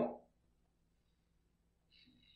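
The end of a spoken word, then near silence: faint room tone with a steady low hum.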